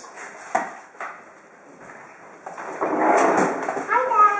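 Two sharp knocks about half a second and a second in, like a kitchen freezer or cupboard being opened. Then a louder rough noise starts about two and a half seconds in.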